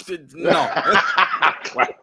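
A man chuckling and laughing, mixed with a few spoken words; the laughter stops just before the end.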